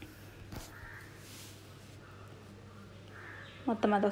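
Quiet room tone with a steady low hum and one light click about half a second in. Near the end a loud, quick series of pitched calls begins, several a second.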